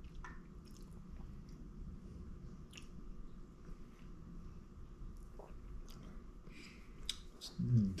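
Faint mouth sounds of whiskey tasting: a sip of bourbon worked around the mouth, with small wet clicks and lip smacks over a low room hum.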